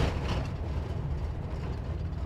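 Cab interior noise of a Class C motorhome driving on a rough dirt road: a steady low rumble of tyres, road and engine.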